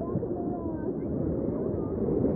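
River water rushing and splashing around an inflatable raft, a steady rough noise, with faint voices in the background.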